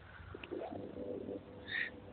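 A bird calling outside: a low call lasting under a second from about half a second in, then a short higher note near the end.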